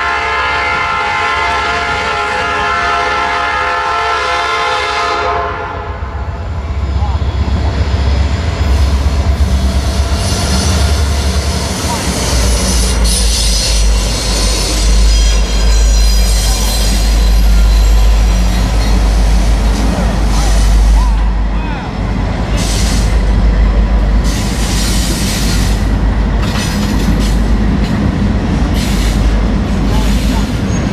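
A Norfolk Southern freight train's air horn sounding one long chord that ends about five seconds in, followed by the diesel locomotives passing close by with a deep, heavy engine rumble and steel wheels clattering on the rails.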